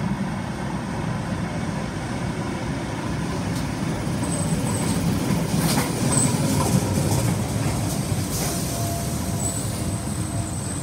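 Electric Tyne and Wear Metrocar pair running into the platform and passing close by as it slows, wheels rumbling steadily on the rails. Faint high squeals come and go in the second half, with a couple of sharp clicks, and a steady tone sets in near the end.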